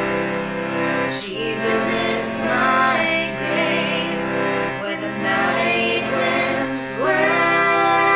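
A woman's singing voice in a slow country ballad over sustained instrumental accompaniment with plucked strings, the voice sliding up into new phrases about a second in and again near the end.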